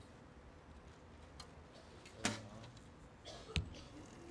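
A single recurve bow shot: the string's sharp release with a brief ring about two seconds in, then about 1.3 seconds later a sharp click as the arrow strikes the target.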